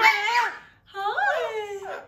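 Double yellow-headed amazon parrot vocalizing: two drawn-out, speech-like calls whose pitch bends up and down, with a short pause between them.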